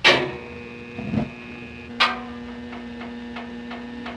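A thermostat clicking and a home furnace switching on. A sharp click comes first, then a low rumble about a second in that settles into a steady hum, with a second click about two seconds in and light ticking over the hum.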